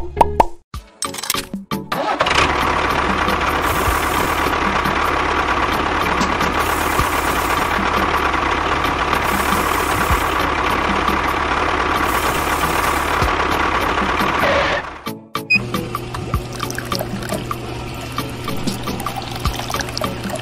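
A few short knocks, then a small model tractor's motor running steadily from about two seconds in until it cuts off abruptly about fifteen seconds in. A quieter, lower steady hum follows.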